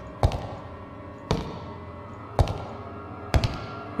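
Four slow, heavy footsteps on a stone floor, about a second apart, each echoing briefly as if in a large hall, over a low steady hum.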